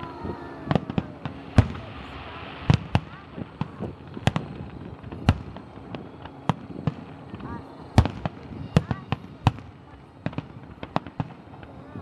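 Aerial fireworks shells bursting overhead: a rapid, irregular series of sharp bangs, loudest about a second and a half in and again about eight seconds in.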